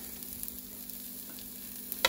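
Diced vegetables and toasted fideo noodles frying in oil in a pan: a steady soft sizzle with a few faint crackles, over a steady low hum.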